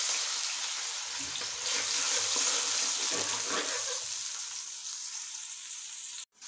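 Ground onion paste frying in hot oil in an aluminium pot: a steady sizzle that slowly grows quieter.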